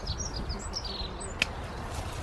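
Small birds chirping, a run of short high notes through the first second or so, over a low rumble. A single sharp click about one and a half seconds in: the snip of pruning secateurs cutting through a forsythia stem.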